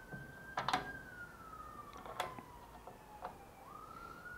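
Homemade switchable neodymium magnets being turned on by their knobs one after another, each engaging onto the steel table with a sharp click: a pair of clicks under a second in, another about two seconds in and a fainter one near the end. A siren wails in the background, its pitch falling slowly and rising again near the end.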